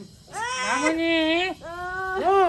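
A newborn baby crying: two long, held cries, each about a second, with a short break between them.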